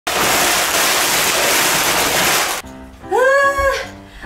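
Plastic-wrapped ice pop packets pouring out of a paper bag onto a stainless steel table, a dense rustling clatter for about two and a half seconds that stops abruptly. About a second later a musical jingle with a melody starts.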